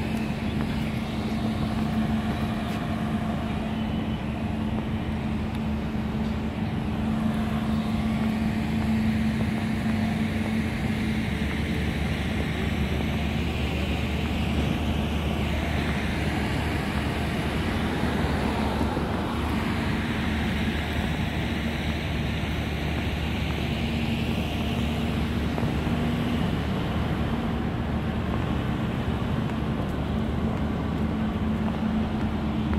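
Steady road traffic noise, with cars swelling past every few seconds over a constant low hum.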